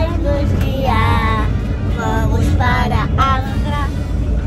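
A woman and a young girl singing in short held phrases inside a vehicle, over the steady low rumble of the vehicle's cabin.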